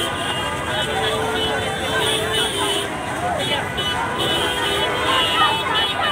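Large crowd of fans shouting and clamouring at close range, many voices overlapping, with a steady held tone rising above them for about a second and a half near the start.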